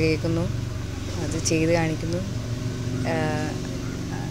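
Speech: a person talking in short phrases over a steady low background hum.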